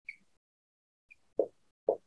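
A pen writing: a few short soft knocks in the second half, with faint brief squeaks near the start and about a second in.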